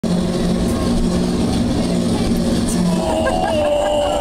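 Dark-ride car rolling along its track with a steady rumble. A high held tone comes in about three seconds in.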